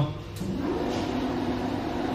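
A flatbed printer's lift motor runs with a steady hum, pushing the wetted dust-free cloth up against the printhead. A faint click comes about half a second in.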